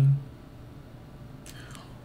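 The end of a man's spoken "okay", then quiet room tone with a faint intake of breath about one and a half seconds in, just before he speaks again.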